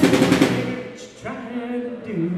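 Live rock-and-roll band playing: a quick run of drum hits in the first half second, then the band drops away into a quieter break with a few held notes.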